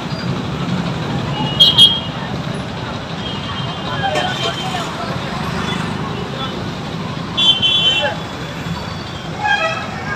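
Street noise of traffic and a marching crowd, with scattered voices. Two short, high-pitched toots stand out, one just under two seconds in and another about seven and a half seconds in.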